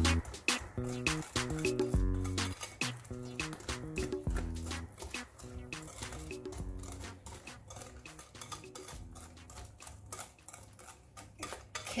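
Wire whisk beating chocolate cake batter in a glass bowl, clicking rapidly against the glass. Background music with a bass beat plays underneath and fades in the second half.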